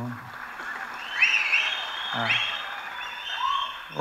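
Audience applauding and cheering, with a few high rising whistles.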